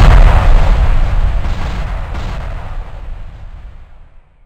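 Cinematic explosion-style boom sound effect: a deep rumbling blast that is loudest at first and fades steadily away over about four seconds, dying out near the end.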